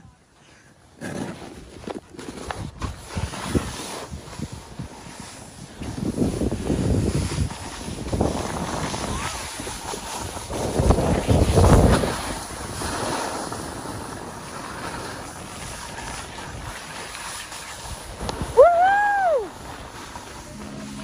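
Wind buffeting the phone's microphone and a snowboard sliding and scraping over packed snow during a run downhill, the rush swelling louder about six and again about eleven seconds in. Near the end comes a short high cry that rises and falls.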